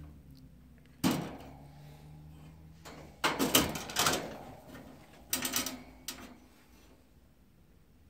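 Wire pet cage door being handled and opened: a sharp clank about a second in, then two bouts of metal rattling and clattering.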